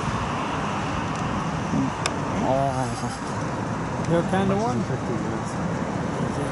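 Steady jet noise from a Boeing 787 Dreamliner's two turbofan engines as it approaches on final, with low voices talking briefly in the middle.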